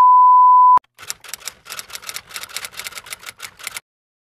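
A steady test-tone beep lasting about a second, like the tone under broadcast colour bars. Then about three seconds of rapid typewriter key clacks, a sound effect for text being typed out.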